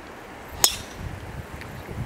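Golf driver striking a ball off the tee: a single sharp, high metallic crack with a brief ring, about half a second in.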